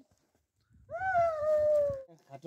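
A single long pitched call that starts about a second in, after a silent gap, rises briefly, then slides slowly down in pitch for about a second.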